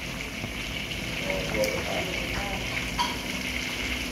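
Pork belly (babi tore) deep-frying in a wok of oil: a steady sizzle, with a couple of light clicks.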